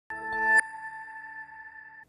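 TV news ident sting: a synthesized chord swells louder for about half a second, cuts off sharply, and leaves a high, chime-like tone ringing on and slowly fading.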